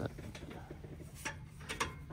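Faint metallic clicking and ratcheting from the hand-worked release lever of a round-bale hay trailer, with a few sharper clicks in the second half.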